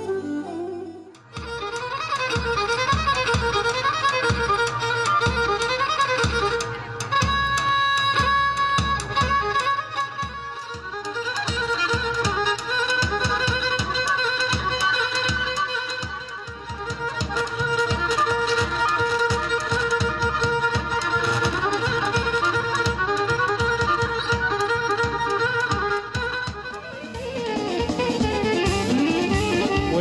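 Pontic Greek folk dance music played live: a bowed Pontic lyra (kemenche) melody over a steady drum beat, starting about a second in after a brief break. Near the end the beat drops back under a wavering melodic line.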